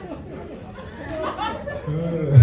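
Indistinct chatter of several voices in a small room, no clear words.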